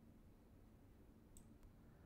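Near silence: faint room tone with two faint computer mouse clicks about one and a half seconds in.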